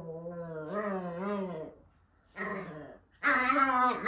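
Small chihuahua–Pomeranian mix dog growling in play, a drawn-out pitched growl that wavers up and down like a dirt bike revving, in three stretches.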